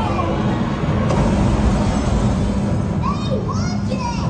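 Show sound effect of a boat plunging down a waterfall: a steady, heavy rush of falling water over a deep rumble. Near the end come a few shouts that glide up and down in pitch.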